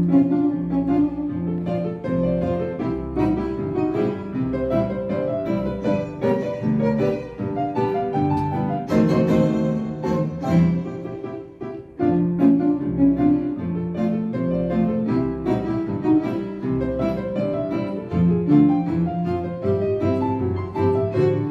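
Live instrumental music from a small ensemble of violin, grand piano and double bass, with a short break about twelve seconds in.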